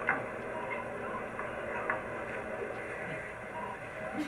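A few light clicks of beads being set onto the pegs of a wooden board, with a sharper click just after the start, over a steady room hum.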